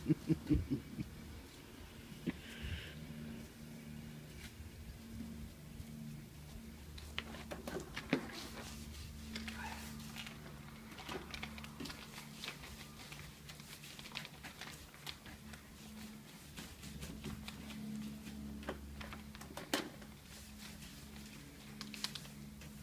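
Paintbrush working gloss onto a plastic front door: faint scattered taps and brushing sounds over a steady low hum.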